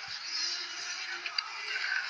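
Steady background sound of a ski-jumping broadcast: an even din from the venue with a faint held low tone through the middle.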